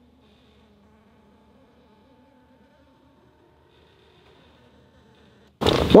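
Faint steady buzzing hum of a small electric motor as the turret swings the transducer round to the right. Near the end a sudden loud noise breaks in.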